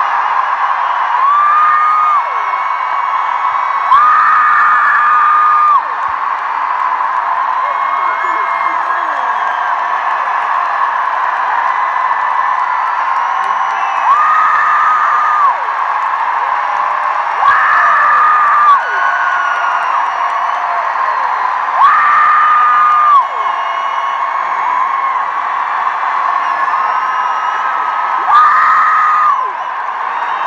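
Large arena crowd cheering and screaming without a break, with louder held screams from nearby fans rising out of it every few seconds.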